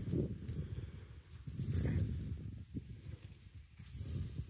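Low, uneven rumbling and scuffing of close handling noise, with a few faint soft taps, as a coin is turned and rubbed in the hand.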